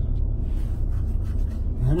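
Steady low rumble of road and engine noise inside the cabin of a moving car. A man starts to speak near the end.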